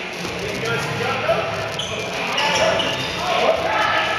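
Rubber dodgeballs bouncing and thudding on a hardwood gym floor, with players' voices calling out over the game.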